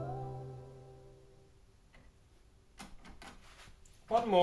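The last held chord of a song, played through a homemade ribbon-tweeter speaker, fades away over about a second and a half. Near silence follows, broken by a few faint clicks in the second half.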